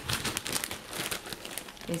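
Plastic bag of dried egg noodles crinkling as it is handled and turned: a dense, irregular run of small crackles.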